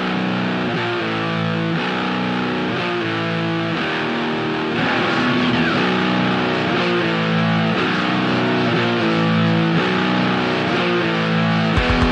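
Black metal: a distorted electric guitar plays a riff of repeating chord changes with no bass or drums underneath. Just before the end, the full band comes in with drums and bass, and the music gets louder.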